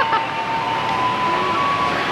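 Steady indoor ambience of a shopping-mall café: an even wash of background noise with a continuous thin whine running through it.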